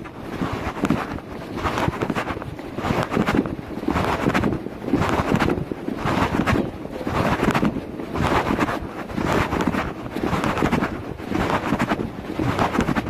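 Wind and handling noise rushing over a phone microphone as the phone swings in a walking hand, swelling and fading about once a second.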